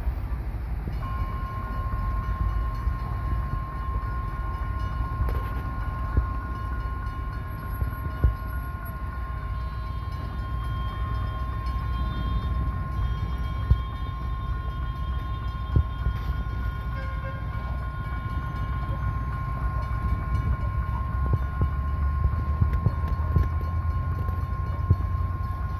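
Level-crossing warning alarm sounding one steady high tone, starting about a second in, over a low rumble. The rumble swells near the end as the diesel train, an EMD GT22CW locomotive, approaches.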